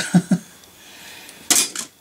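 A short laugh, then about one and a half seconds in a single sharp metallic clink and clatter of a diecast toy car being put into a plastic crate among other diecast models.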